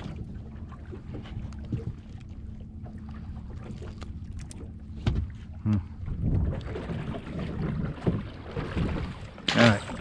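Wind and water noise aboard a small open fishing boat with a steady low hum, and small clicks and rustles as a sea bass is unhooked and handled. The wind noise grows louder in the second half, and a man's voice comes in briefly near the end.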